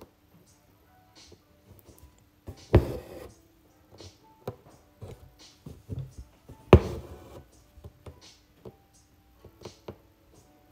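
Six-strand embroidery floss drawn through hooped fabric in satin stitch, with small ticks from the needle and two louder sharp knocks, about three and seven seconds in. Faint music plays in the background.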